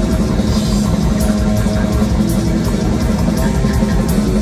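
Death metal band playing live and loud: distorted electric guitars and bass over drums and cymbals, a dense, unbroken wall of sound.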